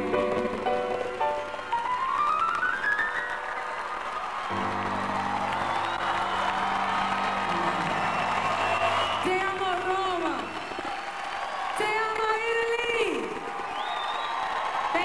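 Live soul ballad: a woman sings to her own piano over a long held backing chord, with a stepped rising run early on and wavering melismatic vocal runs in the second half.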